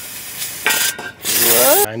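Aerosol parts cleaner spraying in hissing bursts onto the underside of a car around a freshly fitted oil filter. The spray gets much louder a little over half a second in, dips briefly around a second, and cuts off suddenly just before the end.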